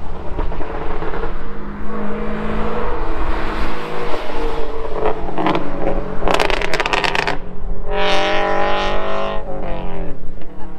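Cars passing on a canyon road, their engines pulling hard with the pitch rising. A louder, deep exhaust note near the end rises as it goes by, one that an onlooker took for a 5.0 Mustang.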